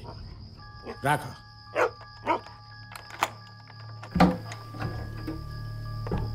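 A dog barking several short times over a soft, sustained musical chord with a low hum, and one sharp click about three seconds in.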